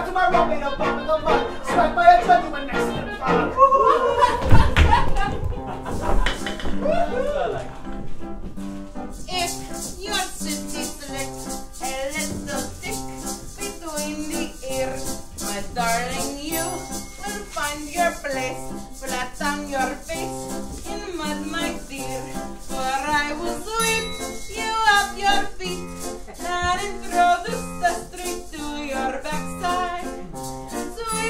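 Musical-theatre band music with violin, clarinet and piano, with a heavy thump about four seconds in. About eight seconds in, a steady rhythmic accompaniment takes over, with a tambourine jingling on the beat.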